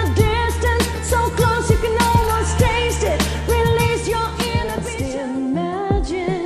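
A woman singing a pop song over its backing track with a heavy bass and a beat; the bass drops out about five seconds in.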